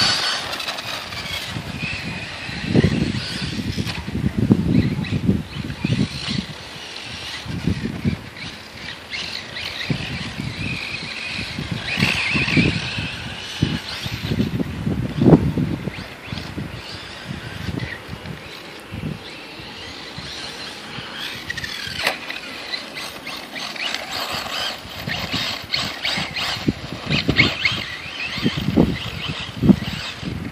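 Electric RC buggy's brushless motor whining, rising and falling with throttle as it drives around a dirt track. The whine fades in and out with distance. There are scattered low thumps, the loudest about fifteen seconds in.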